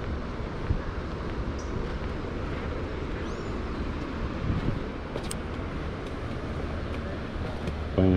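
Steady outdoor seaside ambience: a low rumble and hiss of wind and distant surf, with a couple of faint high bird chirps.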